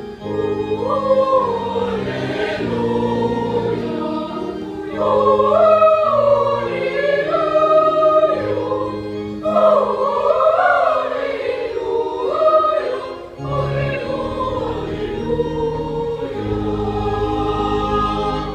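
Boys' choir singing a sustained, moving choral piece over held organ chords. A deep bass note enters near the end.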